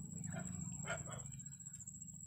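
Faint animal calls in the background, a few short ones in the first second or so, over a low steady hum.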